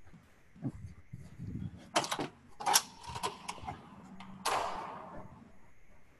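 Handling noise at a computer microphone: several sharp clicks and knocks about two to three and a half seconds in, then a short rustle at about four and a half seconds that fades away, over a faint hum.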